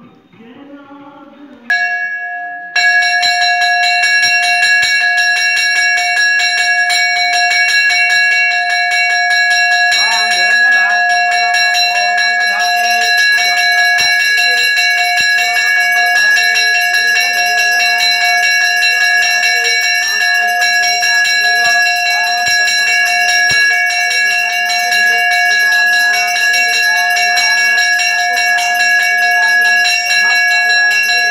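A temple bell rung rapidly and without pause for the aarti, a loud steady ringing that starts about two seconds in.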